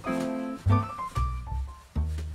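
Background music: keyboard notes over a bass line, changing note about every half second.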